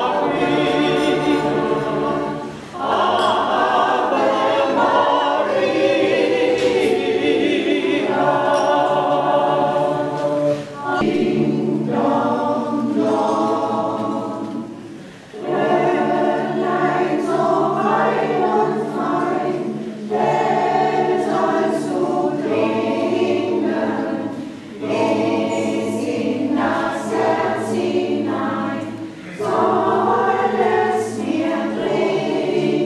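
A mixed choir of men's and women's voices singing unaccompanied, in long phrases with brief pauses between them.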